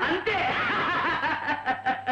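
Several people making overlapping wordless vocal sounds, with one high voice held for about a second and a half and slowly falling in pitch.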